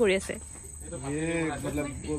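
Crickets keep up a steady high-pitched trill in the background while a man speaks a few short words, once at the start and again about a second in.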